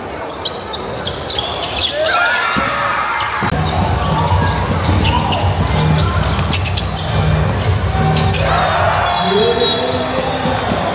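Basketball bouncing on a hardwood court with sneakers squeaking. Music with a low bass line comes in about three and a half seconds in.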